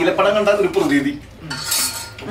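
Metal spoon clinking and scraping against a stainless steel plate while eating, with a short bright scrape near the end.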